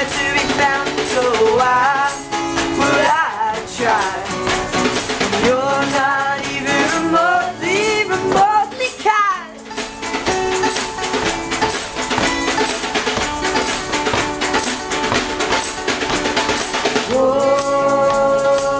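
Live acoustic pop band: a strummed acoustic guitar with a shaker and a snare drum played with sticks keeping a steady beat, and a young man singing. The singing drops out about halfway, leaving guitar and percussion.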